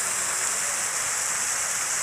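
Fountain jets arcing into a shallow pool, water splashing steadily onto the surface.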